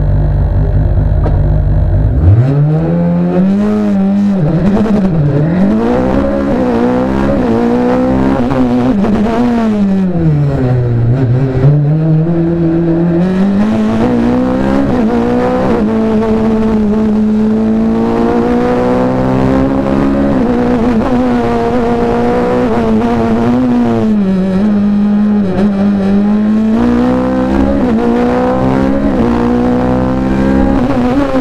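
Ligier JS49's Honda four-cylinder racing engine heard from the cockpit: a steady low sound on the start line, then about two seconds in the note leaps up as the car launches. It climbs and drops repeatedly through gear changes and braking for bends, settling into higher, steadier revs in the second half.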